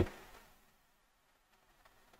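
Near silence: faint steady hiss of an online call's audio, just after a man's voice breaks off at the very start.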